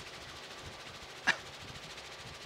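Steady helicopter cabin and rotor noise heard from aboard the aircraft, with one brief sharp sound a little over a second in.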